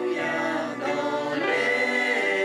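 A choir singing a hymn, voices holding sustained notes that move from one chord to the next.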